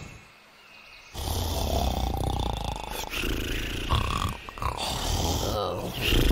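A cartoon character's low, rough vocal sounds, starting about a second in and running in long drawn-out stretches.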